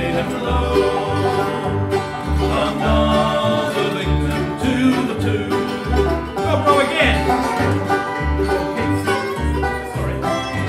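Acoustic bluegrass band playing an instrumental break with no singing. Mandolin, acoustic guitar and resonator guitar play over an upright bass keeping a steady beat of about two notes a second.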